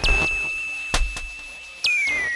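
Experimental electronic music: a single high, whistle-like tone held steady, with a sharp click about a second in and a new note swooping down in near the end.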